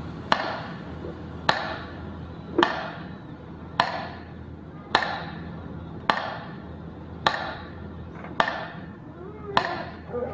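Nine evenly spaced sharp knocks, about one a second, each with a short echoing tail.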